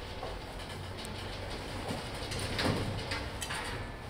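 Rustling and a few light clicks as a heavy firefighter's jacket and gear bag are handled at a metal locker, loudest about two and a half seconds in, over a low steady rumble.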